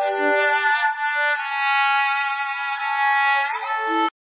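Cello playing sustained bowed notes, isolated by a neural-network sound separator from a cello-and-guitar duet. The separated cello sounds thin, with no deep low end and no treble, and cuts off abruptly at the end.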